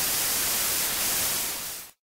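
White-noise static hiss as the recording cuts out. It starts abruptly, fades slightly near the end and stops dead.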